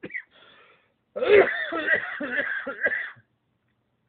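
A man's loud coughing fit of about two seconds, beginning about a second in and mixed with a muttered "oh, dang it"; he blames the coughing on bad allergies.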